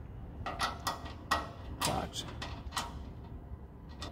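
Gloved hands handling parts around a car's hood cowl, giving a series of light clicks and scrapes of plastic and rubber, most of them in the first three seconds, over a faint low hum.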